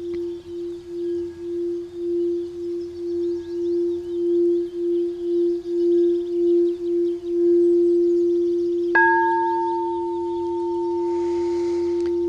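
Quartz crystal singing bowl played by circling its rim with a mallet: a single steady low tone that pulses and slowly grows louder, then rings on evenly. About nine seconds in, a light knock on the bowl adds higher ringing tones that hold to the end.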